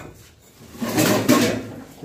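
Loose bricks being shifted by hand, a scraping, shuffling sound lasting about a second in the middle.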